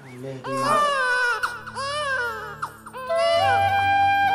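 An infant crying in several long, rising-and-falling wails over background music. Held musical notes take over for the last second.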